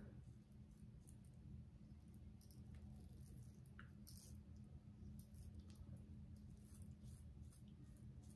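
Near silence over a low steady hum, with faint, scattered scratchy strokes of a single-edge safety razor (One Blade) cutting mustache stubble.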